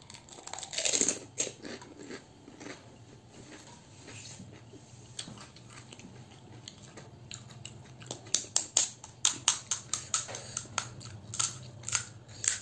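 Mouth-eating sounds of crisp puchka (pani puri) shells: a bite about a second in, then quiet chewing, and a quick run of sharp crunches over the last few seconds.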